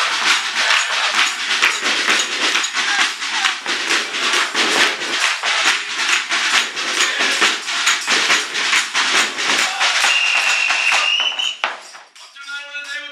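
Fast, steady drumming on a snare drum and a large hand-held frame drum, about four to five strokes a second, with hand clapping. About ten seconds in a shrill, steady whistle sounds for about a second and a half, and the sound cuts off abruptly just before the end.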